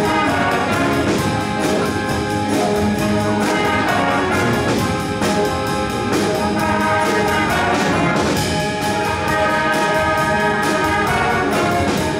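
School band playing: a trumpet section carries the tune over a drum kit keeping a steady beat.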